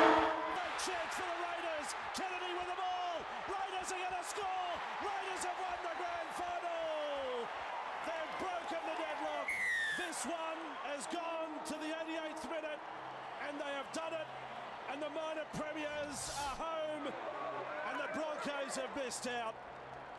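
Indistinct voices, with no words that can be made out, and scattered sharp clicks and knocks. A short falling whistle-like glide comes about halfway through.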